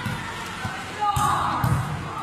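Volleyballs thudding as children hit them and they bounce on the concrete court, with children's voices calling out from about a second in.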